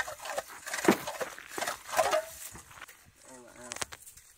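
Hand ice auger pumped up and down in a freshly drilled ice hole, a series of irregular knocks and scrapes as it clears the loose ice from the hole. A brief voice sound comes near the end.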